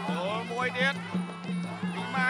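Traditional Khmer boxing ring music: a reed oboe playing sliding, wailing notes over a steady, evenly pulsed drumbeat, to accompany the fight.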